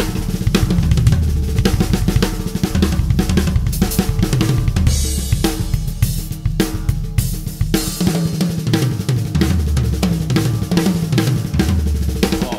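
Tama acoustic drum kit played fast in a busy fusion-style groove: dense snare and tom strokes with cymbal and hi-hat hits over the bass drum.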